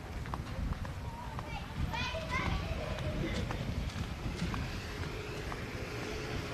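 Outdoor crowd ambience: distant voices of people and children, with a short warbling call about two seconds in, over a steady low rumble of wind on the microphone.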